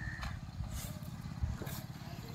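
A few faint scrapes of a metal spade cutting into a pile of loose sand, over a low steady rumble.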